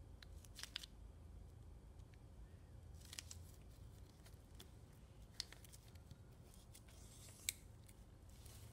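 Faint crinkling and creasing of red metallic foil origami paper as it is folded and pressed flat by hand, with a few short, sharp crackles, the sharpest near the end.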